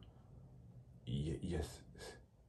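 A pause in a man's talk: quiet room tone, then about a second in a short murmur of his voice, a word or two, before he falls quiet again.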